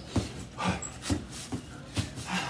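Gloved punches landing on a heavy bag about twice a second, each with a short, sharp exhale through the mouth.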